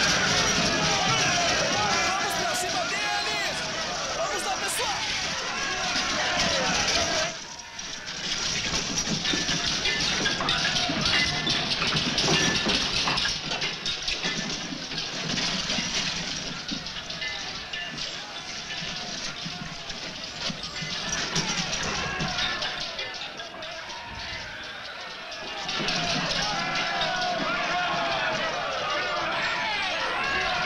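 Film battle soundtrack: a mass of men yelling and shouting as they charge, mixed with music. The din dips briefly about a quarter of the way in and gets louder again near the end.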